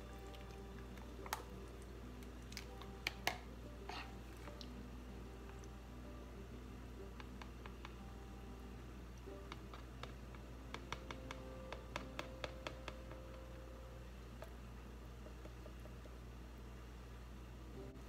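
Quiet room with faint background music and scattered small clicks and taps as a spatula scrapes thick soap batter out of a plastic pitcher onto the mold, with a cluster of clicks about eleven to thirteen seconds in.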